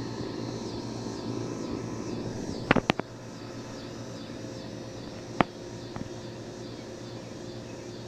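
Steady outdoor background with a low hum and faint, regularly repeating high chirps. A quick run of three sharp clicks comes about three seconds in, and a single sharp click a little past halfway.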